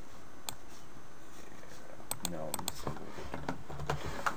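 Sharp clicks of a computer mouse and keyboard: a single click early on, a quick cluster of clicks in the second half and another just before the end.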